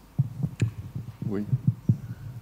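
A microphone being handled: a run of short, irregular low thumps, with a brief spoken "oui" about halfway through.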